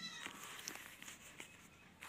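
Sheets of paper being shifted by hand, heard as faint rustling and a few light ticks. A short pitched sound trails off in the first moment.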